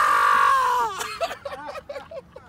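A man's loud, celebratory yell, held for about a second before its pitch falls away, followed by a few short, quieter vocal sounds.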